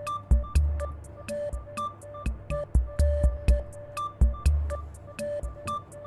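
Background music with a steady beat: low drum thumps and crisp ticks under short, repeated pitched notes.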